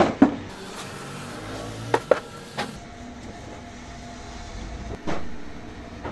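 Wooden sewing machine box frames knocking against wood as they are handled and set down: a few sharp knocks, two close together about two seconds in and a louder one about five seconds in.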